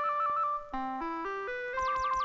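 Background music on bright, organ-like electronic keyboard tones. A bass line steps upward note by note in runs of four under a quick trilling melody, and near the end a string of fast falling whistle-like sweeps begins.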